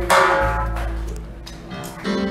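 Live small-band jazz: a chord on plucked strings over a deep upright-bass note is struck right at the start and left to ring, fading away over about a second and a half, with new notes starting near the end.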